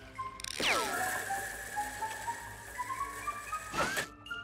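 Cartoon sound effect of a ratcheting, winding mechanism: a falling swoosh about half a second in, then clicking steps that climb in pitch until a burst near the end. Light background music runs underneath.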